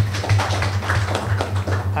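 Light, brief audience applause: a dense, irregular patter of claps over a steady low electrical hum.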